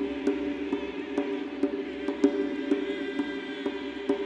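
A choir chanting in sustained low tones, with a soft percussive tick about twice a second.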